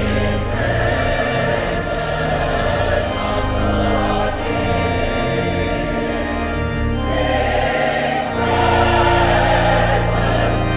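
Mixed choir singing in full voice over pipe organ accompaniment, with deep sustained organ bass notes beneath. The sound grows louder about seven seconds in, and the bass fills out heavier a second later.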